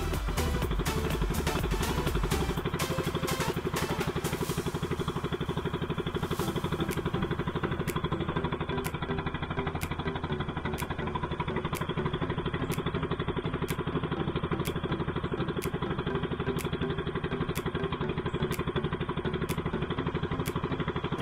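Small outrigger boat engine running steadily at trolling speed, with background music fading out over the first few seconds.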